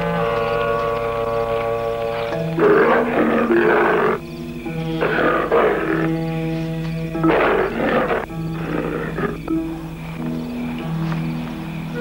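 A tiger growling and roaring four times, each a rough burst of a second or so, over held chords of a dramatic film score.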